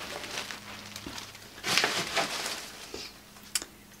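A stack of collage papers rustling as it is handled and moved aside, with the loudest rustle about two seconds in and a small sharp tap near the end.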